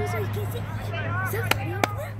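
Players and spectators shouting across a lacrosse field, with two sharp clacks about a third of a second apart near the end, over a steady low hum.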